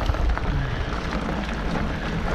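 Mountain bike rolling over a dirt singletrack: steady low rumble of tyres and motion, with scattered small knocks and rattles as the bike goes over bumps.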